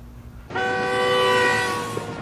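A loud, sustained horn-like chord of several steady tones starts suddenly about half a second in and fades near the end.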